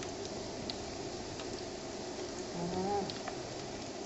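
Fresh egg noodles deep-frying in a pot of hot oil: a steady, soft sizzle with a few small pops.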